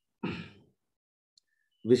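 A man's short breathy exhale, a sigh, about a quarter second in, followed by silence; his speech starts again near the end.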